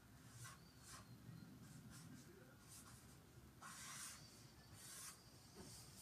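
Faint scratching of a pen drawing on sketchbook paper: a run of short strokes, with longer strokes about three and a half and five seconds in.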